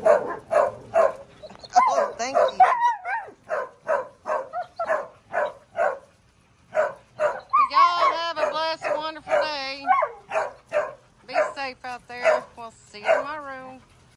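Dogs barking in a rapid, steady string, about two to three barks a second, with a warbling, drawn-out "woo-woo" howl-like call about eight seconds in and a shorter one near the end.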